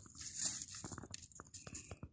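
Light clicks and rustles of a small knife cutting mushroom stems one by one, with mushrooms being handled and dropped into a bag: about a dozen short, sharp ticks spread unevenly across the two seconds.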